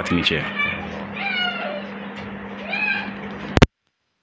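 Three short, high, arching animal calls over a steady low electrical hum, then a sharp click a little after three and a half seconds, after which the sound cuts out abruptly.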